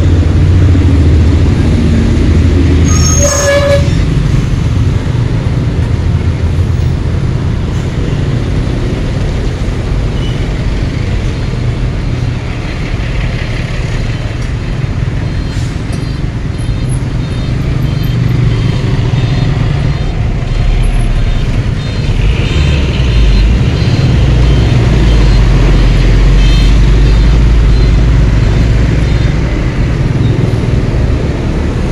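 Heavy road traffic heard from a moving Honda Beat scooter among motorcycles and container trucks: a steady engine and road rumble, with a short vehicle horn toot about three seconds in. A deep truck engine rumble grows louder in the second half as a container truck and bus pass close by.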